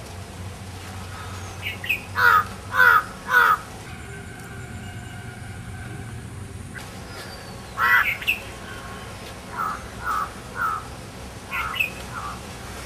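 A bird calling in short, repeated calls: three loud ones in quick succession about two seconds in, then further calls from about eight seconds on, most of them fainter, over a low steady outdoor background.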